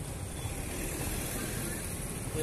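Street traffic heard from a motorcycle in a traffic jam: a steady low rumble of engines with faint voices mixed in.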